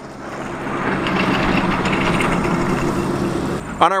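A road vehicle driving past, its engine and tyre noise swelling over about the first second and then holding steady until it cuts off just before the end.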